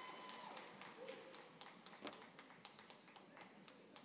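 Faint, scattered hand claps from an audience, a few irregular claps a second, thinning out toward the end.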